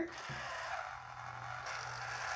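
Motor and gears inside a battery-powered 1994 Mattel Jennie Gymnast doll whirring steadily, starting a moment in, as the corded control pad drives her limbs.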